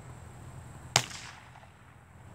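A single shotgun shot, fired in the field, sharp and loud about a second in, with a short echo dying away after it.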